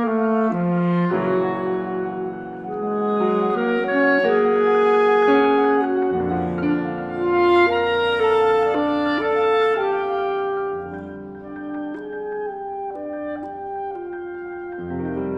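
Clarinet and bass clarinet playing together over piano in a chamber music performance, with held and moving notes that swell in the middle and soften near the end.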